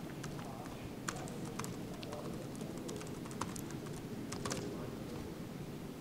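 Typing on a computer keyboard: scattered, irregular key clicks as text is entered.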